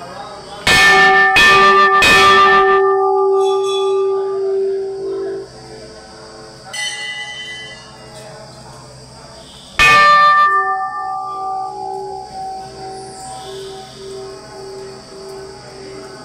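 Large brass temple bell struck three times in quick succession, its ringing tone lingering and fading over several seconds. Fainter, higher bell clangs come in between, and a bell is struck hard again about ten seconds in, its ring wavering as it dies away.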